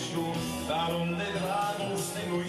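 Live Romanian party music from a wedding band: a gliding melody line over sustained backing notes, with steady drum hits.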